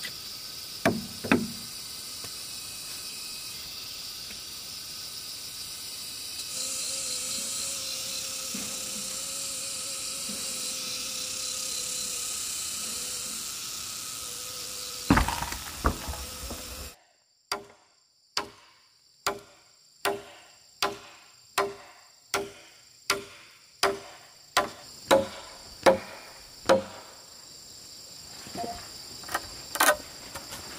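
A blade chopping into a wooden log in a steady series of about fourteen strokes, a little over one a second, growing louder. Before it come a couple of knocks from digging at the ground and a steady high buzz of insects.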